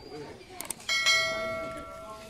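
Subscribe-button animation sound effect: a quick double mouse click, then a notification bell chime just under a second in that rings out and slowly fades.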